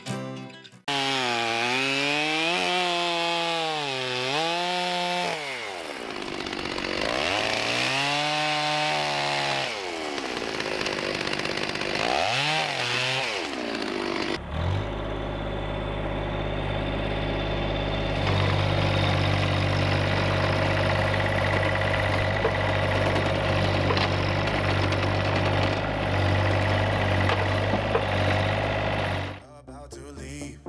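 A machine engine running, its pitch rising and falling in slow waves through the first half, then holding a steady low note.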